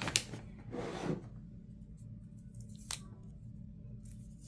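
Hands handling craft supplies on a desk: a quick rustle at the start, a longer papery rasp about a second in, and a single light click near three seconds, as a pen is set down and a roll of washi tape is picked up.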